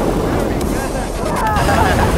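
Wind rushing and buffeting over the camera's microphone during a tandem parachute descent under open canopy, a heavy, steady rumble. Voices call out briefly about a second in.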